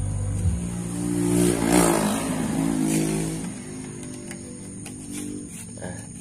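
A motor vehicle driving past, its engine and tyre noise swelling to a peak about two seconds in and then fading away.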